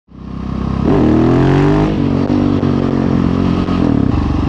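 Husqvarna 701 Supermoto's single-cylinder engine accelerating under way. The sound fades in, the engine note climbs for about a second, drops at a gear change, and rises again near the end.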